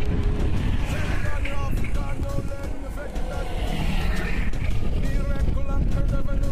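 Street traffic passing close: a motor scooter going by, then an articulated electric trolleybus drawing near, over a dense low rumble of road noise.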